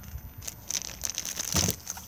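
Rustling, crinkling handling noises as the winding handle is reached for through the motorhome's side door, with a dull thump about one and a half seconds in.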